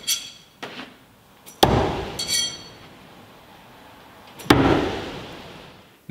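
Two throwing knives hitting a wooden log-slice target: a sharp thunk about a second and a half in and another about three seconds later, each echoing briefly in the room. The first is a relaxed half-rotation throw, the second is thrown harder. A brief metallic clink of steel follows the first hit.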